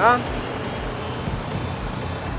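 Suzuki DR150's four-stroke 150 cc engine running steadily as the motorcycle rides along, a low hum mixed with street traffic noise.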